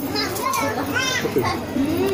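High children's voices calling out over the chatter of a crowd.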